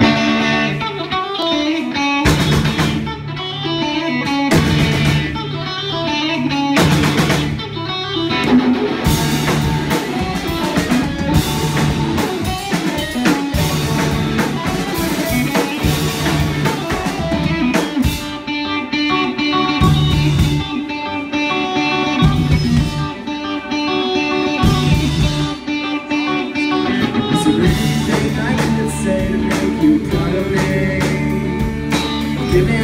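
An indie/emo rock band playing live: electric guitar, bass guitar and drum kit in an instrumental passage with no vocals. It starts abruptly, with several loud cymbal crashes in the first few seconds.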